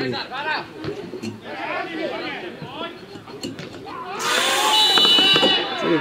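Players shouting to one another on a grass football pitch. About four seconds in comes a loud rush of noise and a shrill referee's whistle held for about a second.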